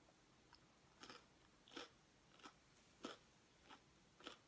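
Faint close-up chewing of a mouthful of Alpha-Bits cereal in milk, about five crisp crunches roughly two-thirds of a second apart, starting about a second in.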